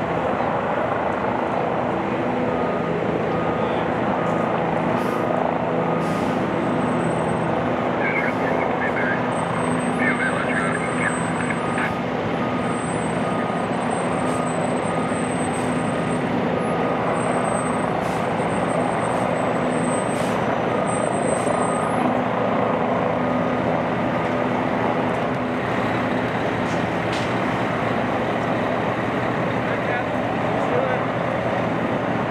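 Heavy truck engine running steadily at constant speed, powering the crane boom that holds a wrecked car aloft on slings. A faint beeping repeats through roughly the first half.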